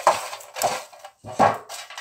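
A hand stirring folded paper raffle tickets around in a metal sweet tin: the paper rustles and scrapes against the tin in three short bursts.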